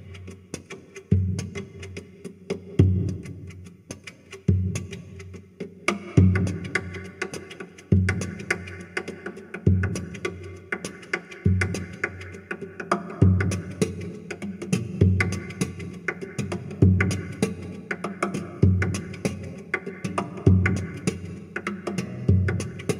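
Solo acoustic guitar played in percussive fingerstyle: a heavy slap on the guitar body gives a low thump about every second and three-quarters, with lighter hits and plucked notes between. About six seconds in, brighter, fuller picking joins over the beat.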